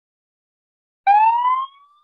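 An ambulance siren sound effect, starting about halfway through with a wail that rises in pitch.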